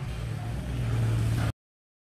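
A low, steady hum with a noisy rush, growing louder, then cut off abruptly to dead silence about one and a half seconds in.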